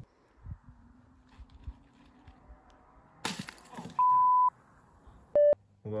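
A sudden sharp burst of noise about three seconds in, fading over half a second, followed by two electronic beeps: a pure steady tone held for about half a second, then a shorter, lower beep with overtones.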